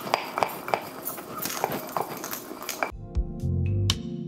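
Kitchen tap running while a glass is scrubbed with a sponge in the sink, with a few sharp clinks. About three seconds in, background music with a beat and bass comes in.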